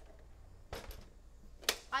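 Handling noises on a tabletop: a short rustle and thump about two-thirds of a second in, then a single sharp click near the end.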